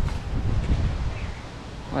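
Wind buffeting the phone's microphone outdoors, a low rumble that is strongest in the first second and then eases off.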